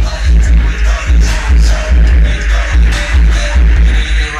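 Bass-heavy music played very loud through a Kicker Solo X 18-inch car subwoofer, with deep bass hits repeating in a steady beat.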